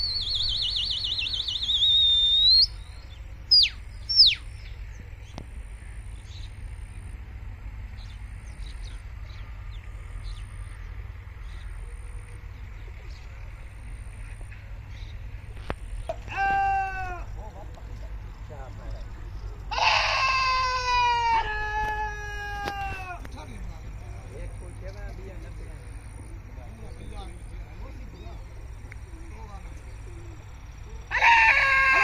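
High warbling whistle for the first couple of seconds, two short sharp whistles a moment later, then long falling calls from men's voices, once about halfway and again in two drawn-out calls a few seconds after, as pigeon fliers whistle and shout to their circling flock. A steady low rumble runs underneath.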